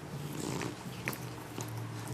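Scottish Fold cat purring, with a brief louder noise about half a second in.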